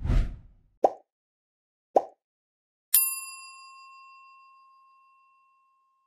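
End-screen animation sound effects: a short low rush of noise, two quick pops about a second apart, then a bright bell-like ding about three seconds in that rings and fades away over a couple of seconds.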